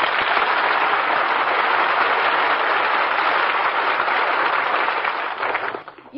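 Studio audience applause from an old 1940s radio broadcast recording, greeting the guest star's entrance. It holds steady, then dies away near the end.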